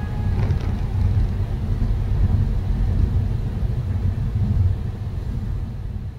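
Steady low road rumble of a car driving through a highway tunnel, heard from inside the car.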